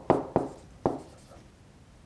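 Stylus writing on a pen tablet, a few quick sharp strokes in the first second as a handwritten fraction is drawn.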